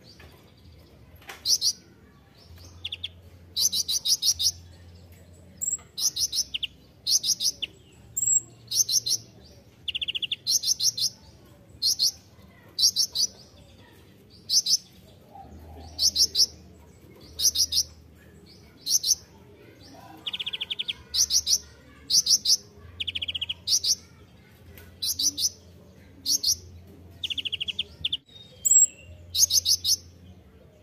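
Kolibri ninja (van Hasselt's sunbird) singing: a long run of short, high trilled chirps, about one or two a second, with a few lower buzzy trills among them.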